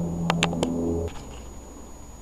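A few quick metallic clicks from a socket and breaker bar working the ball-joint stud nut on a VAZ 2112, over a steady low hum that cuts off about a second in.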